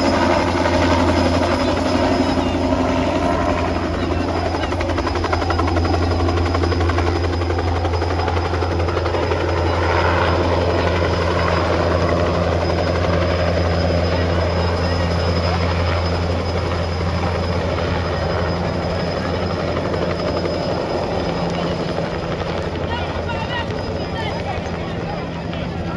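Light single-rotor helicopter flying low overhead, its rotor beat steady and continuous, growing a little fainter near the end as it moves away.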